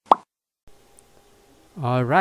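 A single short pop right at the start, followed by a faint steady hum.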